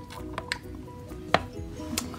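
Soft background music with a few light plastic clicks and taps from a toy baby bottle handled at a vinyl doll's mouth as the bottle is taken away. The sharpest click comes a little past the middle.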